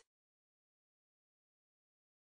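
Silence: a digitally silent gap with no sound at all.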